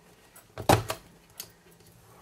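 A sharp plastic click as an Envelope Punch Board's punch is pressed through cardstock, about two-thirds of a second in, with a few lighter ticks of paper and tools being handled around it.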